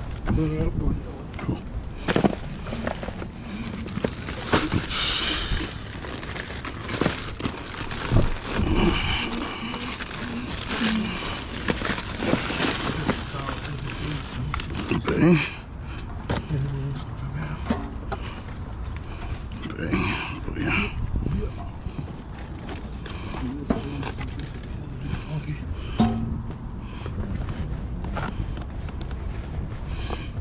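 Knocks, thuds and rustling as a cardboard box with a covered metal stockpot and paper-wrapped food is handled and loaded onto a pickup truck's back seat. Indistinct voices can be heard under it.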